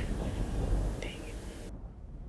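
Faint background hiss with a brief, faint higher-pitched sound about a second in; the hiss cuts off suddenly near the end, leaving silence.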